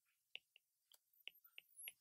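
Faint, sharp ticks of a stylus tip tapping a tablet screen during handwriting, about seven small clicks spread over two seconds.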